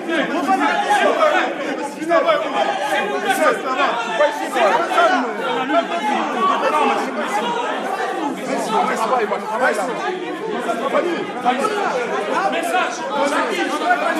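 A crowd of many people talking at once in a large room, their voices overlapping into a dense, continuous chatter with no single voice standing out.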